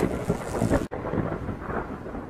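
Thunder-like rumbling sound effect for the animated channel logo, with a brief break about a second in.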